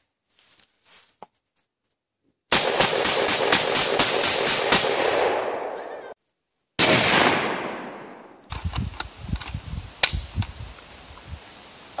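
A rapid string of about ten gunshots from a long gun in a little over two seconds, with echo ringing between them. After a cut comes one loud blast whose echo fades over almost two seconds, and later a single sharp shot.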